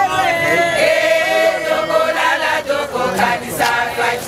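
A group of women singing a chant together, many voices at once, with a few hand claps near the end.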